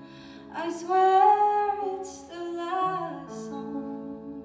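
A woman singing a soft ballad phrase over sustained chords on a digital piano (Yamaha DGX-640 keyboard playing a sampled acoustic piano sound). The sung line comes in about half a second in and ends a little after three seconds, with the piano chord ringing on.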